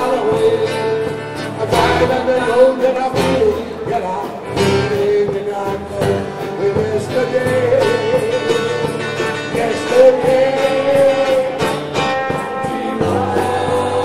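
Live amplified band music, with a drum kit keeping time under held melodic notes and some singing voices.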